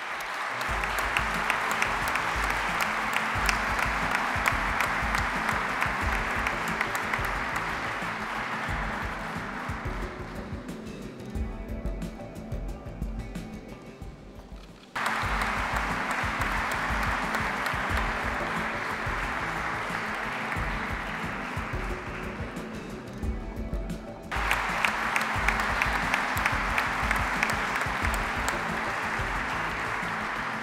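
Audience applauding steadily over background music. The clapping thins out about a third of the way in, then comes back abruptly twice.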